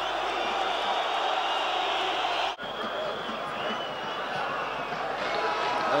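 Stadium crowd cheering after a home goal, a steady roar. It drops out briefly about two and a half seconds in, at an edit, then carries on.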